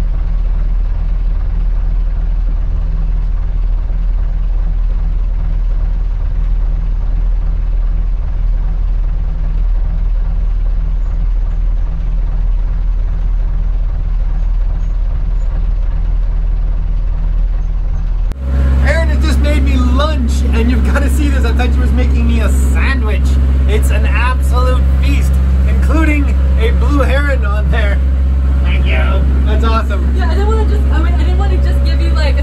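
A boat's inboard engine running underway, a steady low drone heard from inside the cabin. About two-thirds of the way in it cuts to a louder, deeper engine drone with voices over it.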